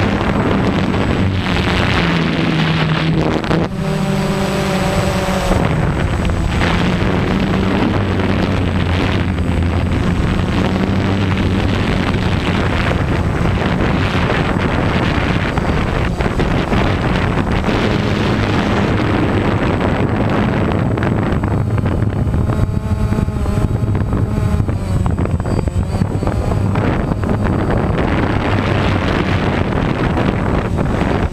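DJI Phantom quadcopter's motors and propellers droning, heard from the GoPro mounted on it, with wind buffeting the microphone. The hum shifts in pitch now and then as the throttle changes, over a thin steady high whine.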